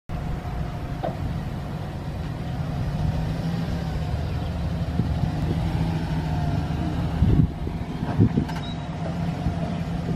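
A 2009 Chevrolet Silverado 1500's 5.3-litre V8 gas engine idling steadily. A couple of brief louder bumps come near the end.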